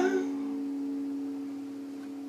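The last chord of an acoustic guitar rings out and slowly fades. The tail of a held sung note cuts off just at the start.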